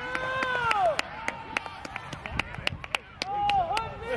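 Voices calling out across an outdoor soccer field: one long call at the start and a shorter one near the end, with scattered sharp clicks throughout.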